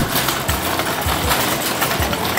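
A metal shopping cart rolling over a store floor, rattling steadily, over background music with a steady beat.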